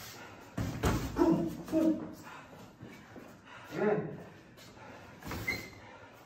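Gloved boxing punches landing with a few sharp thuds, mixed with short bursts of voice from the people sparring.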